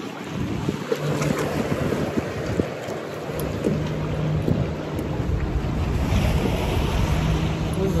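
Wind buffeting the microphone over water lapping around the kayak, with the low rumble of the gusts growing heavier about five seconds in.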